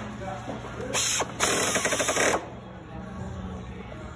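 Pneumatic screwdriver run in two bursts, a short one about a second in and a longer one of about a second just after, driving screws into the corner of a metal window frame.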